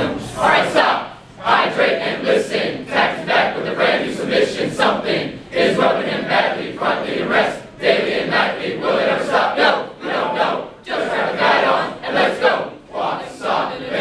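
A large group of Army warrant officer candidates singing their class song in unison, delivered loudly as short rhythmic phrases with brief breaks between them.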